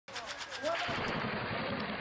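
Rapid automatic gunfire, about seven shots a second, for roughly the first second, then a muffled, low-quality battlefield recording with voices over noise.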